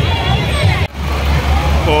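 Fairground din: a steady low rumble of ride machinery, with voices faintly in the background. The sound drops out briefly a little under a second in.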